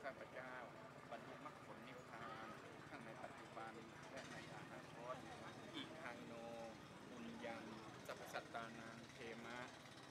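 Faint voices of several people talking, scattered and overlapping.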